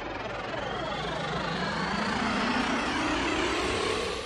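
Rising synth sweep opening an electronic song: many tones glide upward together and grow steadily louder, like a jet passing.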